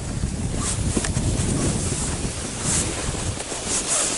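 Wind rumbling on the microphone, mixed with a plastic sled sliding over snow as it is pulled uphill, with a few brief scrapes or crunches.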